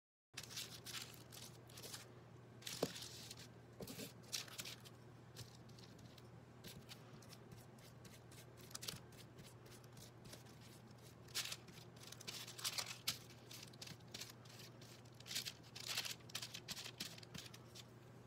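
A paintbrush scrubbing and dabbing paint onto crinkled paper and cardboard: short, dry scratchy strokes that come in bursts, busiest near the start, around three to four seconds in, and again in the second half. A faint steady low hum runs underneath.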